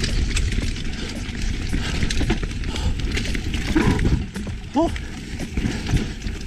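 Mountain bike descending a slippery dirt forest trail at speed: a steady rumble of tyres on the dirt with many small clicks and rattles from the bike. A short vocal sound comes about four to five seconds in.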